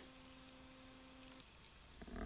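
Near silence: room tone with a faint steady hum that stops about one and a half seconds in.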